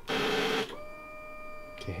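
KTM Duke motorcycle's starter pressed on a flat battery: a short harsh burst, then a steady high whine instead of the engine firing. The battery is too discharged to start the bike.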